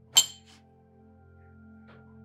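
A single sharp clink with a short high ring, followed by a fainter tick, over soft background music.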